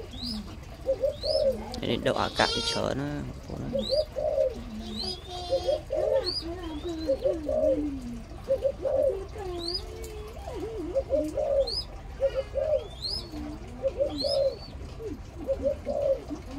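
Birds calling: low cooing calls repeat throughout. Short, high, rising chirps come about once a second, and a louder, harsher call comes about two seconds in.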